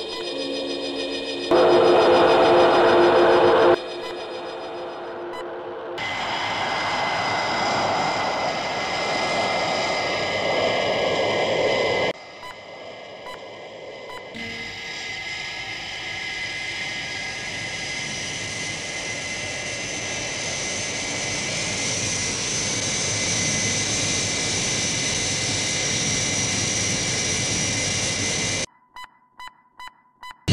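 Jet aircraft engine roar, a steady rushing sound that swells in about 6 s in and holds, with music underneath. There are short steady electronic-sounding tones in the first few seconds and a few abrupt cut-outs near the end.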